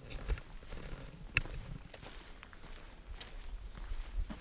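Footsteps of a hiker walking on a dirt path, irregular low thuds with rustling, and one sharp click about a second and a half in.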